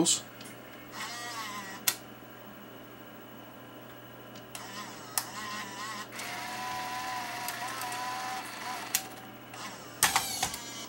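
U-loading 8mm video deck unloading its tape after eject. The loading motor whines, wavering in pitch at first and then holding a steady whine for a couple of seconds. Sharp mechanical clicks come about two, five and nine seconds in.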